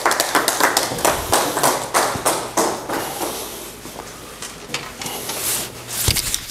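A small audience applauding in a room, with dense, irregular claps that are thickest in the first few seconds and thin out toward the end.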